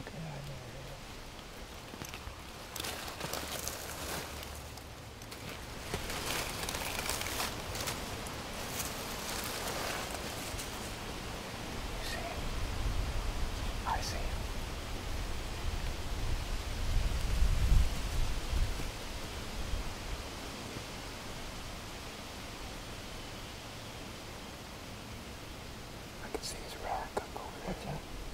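Rustling and crackling in dry forest leaves with faint whispering. A low rumble of wind on the microphone swells in the middle.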